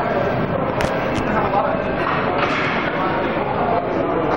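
Busy gym din of overlapping background voices and chatter, with two short sharp knocks about a second in.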